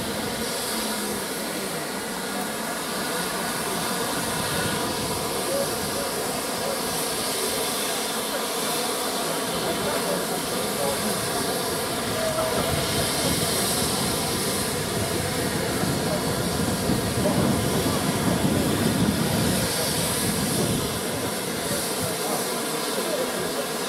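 GWR Castle-class steam locomotives standing in steam, hissing steadily, the hiss swelling for a few seconds past the middle and again near the end, with a crowd chattering around them.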